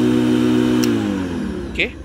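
Apache TurboCUT ZF6117 electric lawn mower's motor and blade running with a steady hum. A sharp click comes a little under a second in, and then the motor spins down with falling pitch as the safety switch lever is let go.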